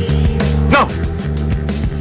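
Dramatic film score with scattered gunshots, and a man's short shouted "no" just under a second in.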